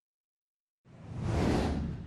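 Total silence, then about a second in a whoosh sound effect swells up, peaks and begins to fade: the swoosh of a broadcast graphic transition.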